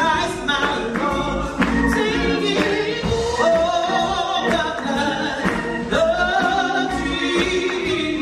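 Gospel singing by several voices over instrumental backing, with long held notes that slide between pitches.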